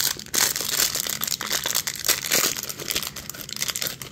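Thin clear plastic bag crinkling and crackling in the hands as it is opened and a small vinyl mini figure is worked out of it. The crackle runs continuously and drops away at the very end.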